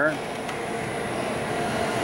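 Small screw press running steadily under load as it squeezes frac drilling cuttings, a steady mechanical hum and rush from its electric drive running at 60 hertz.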